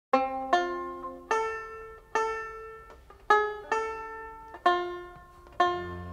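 A plucked string instrument playing a slow line of eight single notes, each struck sharply and ringing away.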